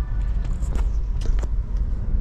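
Steady low rumble inside a Daihatsu Xenia's cabin as the car drives off, with a few faint clicks.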